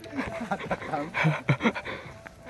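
Indistinct, broken-up voices with short breathy puffs, like people talking and breathing hard while walking.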